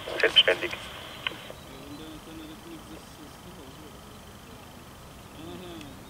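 A man's voice over a two-way radio, with the thin sound cut off in the highs, for about the first second and a half. Then a quiet steady hiss with faint wavering low tones.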